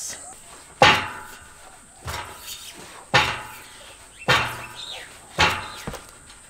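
A steel pull-up rig clanking five times, about once a second, one hit per rep of chest-to-bar pull-ups done in a weighted vest, each hit ringing briefly.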